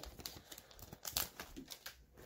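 Faint crinkling of a foil hockey card pack wrapper, with irregular light clicks and rustles as the cards are slid out of it and handled.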